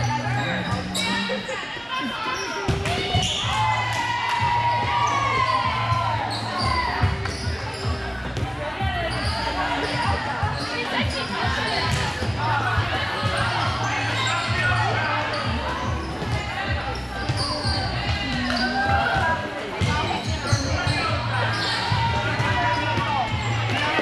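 Busy volleyball gym: many voices of players and spectators chatter and call out across a large echoing hall, with volleyballs being hit and bounced on the courts. A low hum comes and goes underneath.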